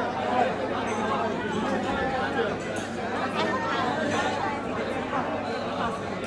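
Overlapping chatter of many dinner guests talking at once, a steady babble of voices with no single speaker standing out.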